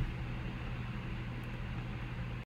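Steady room noise: a low, even hiss with a faint constant hum, with no other sound standing out.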